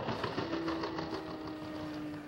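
Skateboard rolling across rough concrete, its wheels and trucks clattering in a fast run of small clicks. A steady low tone sets in about half a second in and is held over it.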